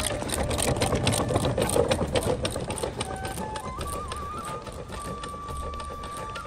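Donkey cart on asphalt: a rapid clatter of hooves and a rattling wooden cart, loudest in the first few seconds and then easing off as it moves away. A thin held note of background music runs under it.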